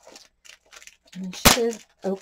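Plastic wrapping on a pad of scrapbook paper being opened: faint crinkling, then one sharp crack of the plastic about one and a half seconds in.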